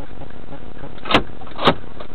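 Two sharp knocks about half a second apart over a steady background noise.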